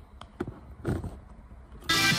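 A few light knocks and clicks of a phone camera being handled and repositioned. Electronic background music then starts suddenly near the end.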